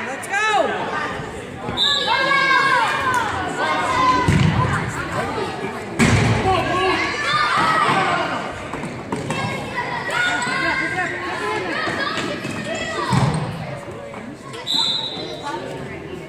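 A futsal ball is kicked and bounced on a hardwood gym floor, with three heavy thuds, about four, six and thirteen seconds in, ringing in the large hall. Between them come short, arching squeaks and players' and spectators' voices.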